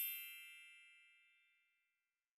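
A bright, bell-like chime from an animated logo sting, struck right at the start and fading away to nothing over nearly two seconds.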